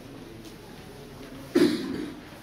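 A single loud cough about one and a half seconds in, over faint room noise.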